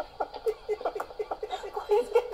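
People laughing: a rapid run of short ha-ha pulses, several a second.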